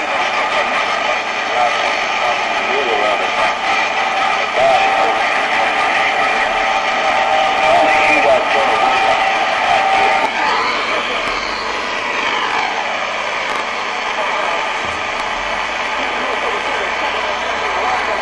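CB radio receiver on the 11-metre band giving steady static hiss, with faint garbled distant voices and whistling heterodyne tones. A steady whistle holds through the middle, then whistles sweep up and down after about ten seconds.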